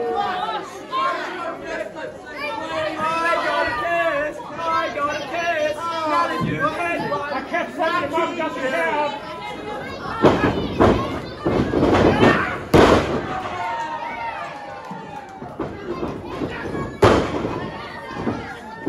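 Spectators chattering and calling out in a hall, then from about ten seconds in a run of sharp slaps and thuds of pro wrestlers striking each other, with another loud impact near the end as a wrestler goes down on the ring mat.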